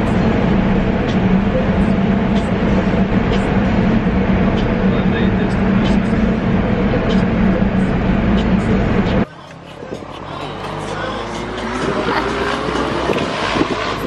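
Loud, steady drone of traffic noise heard inside a small car's cabin in a road tunnel, with a low hum running under it. About nine seconds in it cuts off abruptly to much quieter car-cabin sound on an open road.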